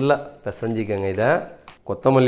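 Speech only: a voice talking in short phrases, with pauses between them.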